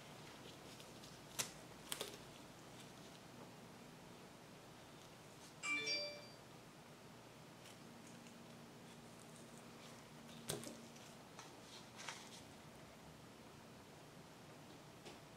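Quiet room with a few light clicks and knocks of hands handling a canvas, wooden stir stick and paint cup, and a brief ringing ding about six seconds in.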